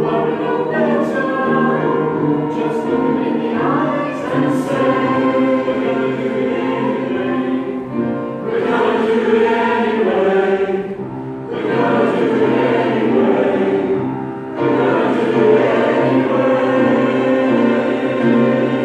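Mixed-voice SATB choir singing in full chords, long held phrases with short breaks between them around the middle.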